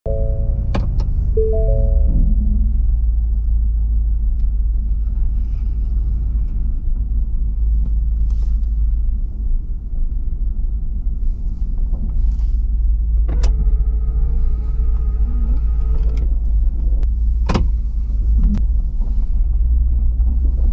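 Engine and drivetrain rumble of a Ford F-350 Super Duty pickup, heard from inside the cab as it pulls away and drives slowly. There are a few short tones near the start, a held chord of tones from about 13 to 16 seconds in, and a few sharp clicks.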